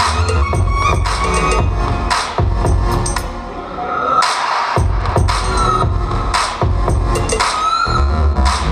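Dance music for a popping battle, with a heavy bass beat and regular sharp hits; the bass drops out for about a second around the middle and then comes back in.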